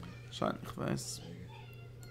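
Two short, soft vocal sounds about half a second apart, over a steady low hum.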